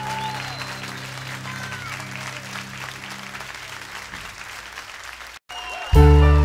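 Live audience applauding over the last held low notes of a song, the clapping slowly fading; near the end the sound drops out briefly to silence and the next song's instruments come in loudly.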